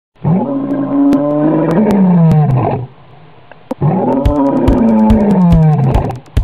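A lion roaring twice, in two long calls, each rising and then falling in pitch, with a short gap between them.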